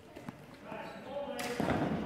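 A rubber reaction ball thrown onto a sports hall floor and bouncing, with one sharp, loud bounce about one and a half seconds in.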